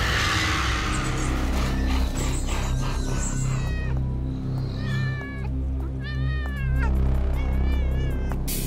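A cat meowing about four times from about halfway on, each call rising then falling in pitch, over background music with a low sustained bass drone.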